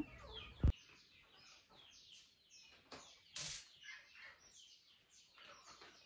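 Small birds chirping over and over in short, quick falling chirps. A single sharp click comes a little before the first second, and a brief rustle about halfway through.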